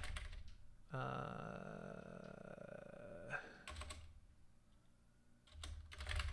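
Keys tapped on a computer keyboard: a short run of keystrokes about three and a half seconds in and a few more near the end, after a long drawn-out spoken 'uh'.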